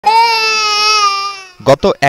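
An infant crying: one long, steady wail that fades out about a second and a half in.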